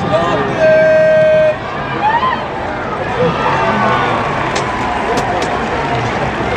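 Stadium crowd chatter with nearby voices talking, and one steady horn blast lasting about a second near the start.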